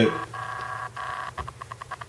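A steady electronic-sounding buzz in two stretches of about half a second each, then a quick run of short pulses of the same buzz near the end, over a faint low hum.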